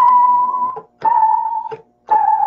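Ensoniq Mirage sampler playing a basic piano sample: two separate held notes, each just under a second, the second a little lower. The pitch warbles and wanders, the sign of the malfunction the sampler is being repaired for.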